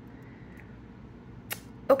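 Quiet room tone in a pause between speech, broken by one short, sharp click about one and a half seconds in.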